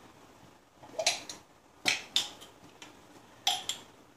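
About five sharp clicks and knocks from a jar of minced garlic being opened, its screw lid twisted off and set down on the table.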